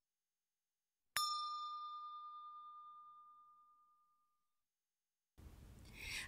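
A single bell-like ding sound effect for the animated subscribe-button graphic, struck about a second in and ringing out, fading away over about three seconds.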